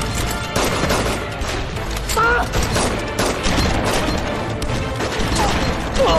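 Film fight-scene soundtrack: a rapid string of sharp hit and impact effects over a bed of background music, with short shouts or grunts about two seconds in and again near the end.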